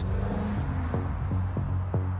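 Car engines accelerating as cars pull away along a street. Under them runs background music: a steady low drone, with a regular beat of about three strokes a second starting about a second in.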